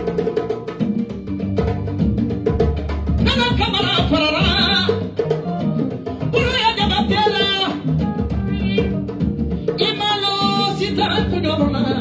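A woman singing live into a microphone over hand drums, including a djembe, with a steady drum rhythm under the song; she sings three phrases, with the drums carrying the gaps between them.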